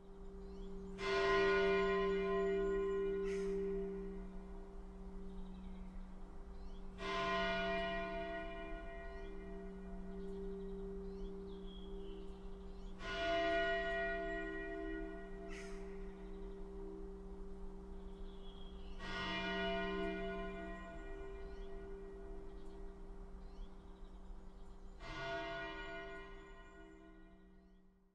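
A church bell of Jyväskylä City Church tolling slowly: five strokes about six seconds apart, each ringing on in a long hum that carries into the next. The ringing fades out near the end.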